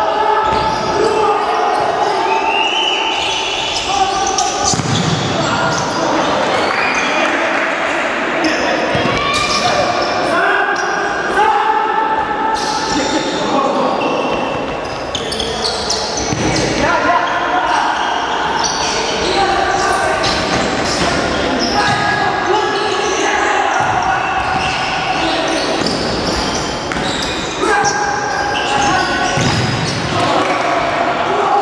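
Futsal play echoing in a large sports hall: the ball being kicked and bouncing on the wooden floor, with players calling and shouting throughout.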